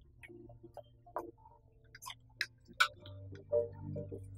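Light background underscore of short plucked notes with a ticking, clock-like accompaniment and scattered sharp clicks. A low sustained bass note swells in about three seconds in.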